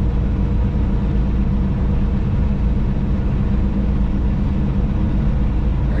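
Steady low drone of a semi-truck's diesel engine and road noise heard from inside the cab while cruising on the highway.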